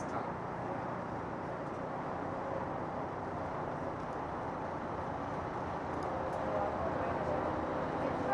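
Steady outdoor background noise, with faint distant voices in the last couple of seconds.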